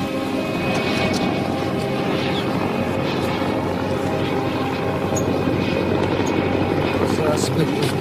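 A steady mechanical drone of engines running, level and unbroken.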